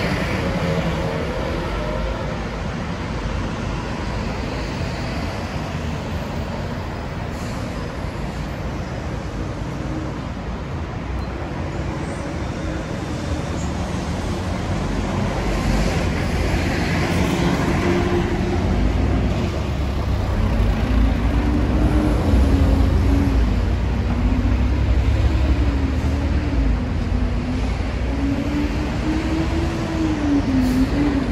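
City street traffic: a continuous noise of vehicles running on the road alongside, getting louder in the second half with a heavy low rumble and a wavering engine tone from a large vehicle passing close by.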